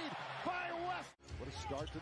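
NBA television broadcast audio: an announcer's commentary over arena crowd noise, with a basketball bouncing on the court. The sound drops out briefly a little past the middle at a cut between highlight clips.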